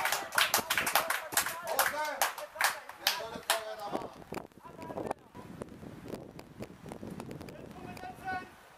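Scattered applause from a small crowd, mixed with voices, dying away after about four seconds, leaving faint distant voices.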